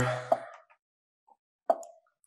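Move sound effects of an online chess board as two moves are played: a faint click about a third of a second in, then a sharper plop with a brief ringing tone near the end.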